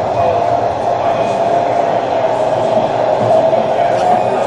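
Indistinct background voices in a busy hall, with a steady tone underneath.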